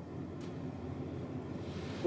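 Pause in speech: low, steady background hum of the room, with one faint click about half a second in.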